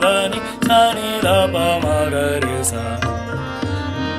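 A voice sings sargam note syllables of an A# scale practice exercise over tabla keeping teen taal and a steady low drone. The singing stops about two and a half seconds in, leaving the tabla and drone playing on as the accompaniment for the learner's turn.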